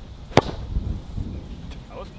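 Golf club striking a soccer ball: one sharp smack about a third of a second in.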